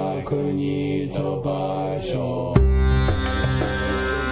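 Voices chanting a Tibetan dedication prayer, cut off about two and a half seconds in by loud instrumental music with a deep bass and sharp plucked-sounding notes.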